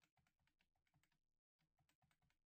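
Faint computer keyboard typing: a quick run of keystrokes with a brief break about one and a half seconds in.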